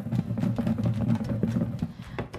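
Several small basketballs tumbling and knocking against each other inside a clear box as it is shaken to mix them for a draw: a rapid, irregular run of dull thuds.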